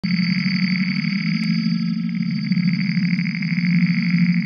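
Opening of an electronic instrumental track: a steady synthesizer drone, a low hum under a held high tone, with a few faint clicks.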